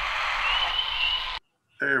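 Outdoor field recording of a great blue heron call, played back from a video: a steady rushing background with a thin, wavering high whistle over it. It cuts off abruptly about a second and a half in as the playback is stopped.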